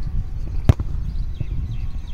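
A single sharp thud of a bare foot striking a football off a kicking tee, about two-thirds of a second in, over a steady low rumble.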